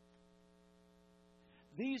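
Faint steady electrical mains hum, a stack of even steady tones, during a pause in speech; a man's voice comes in near the end.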